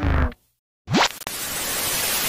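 Intro music cuts off, a short silence, then a quick rising sweep and a steady hiss of TV static: a static-noise transition sound effect.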